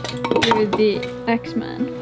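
Hatchet blows splitting kindling on a wooden chopping block: a few sharp knocks, over steady background music.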